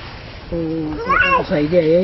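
An older woman speaking in a local language, starting about half a second in, her voice rising high in pitch about a second in.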